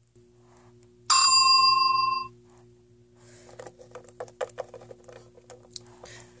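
A single bell ding about a second in, ringing for about a second and fading, over a low steady hum. Then a run of light taps and clicks as small plastic toy figures are moved across a wooden shelf.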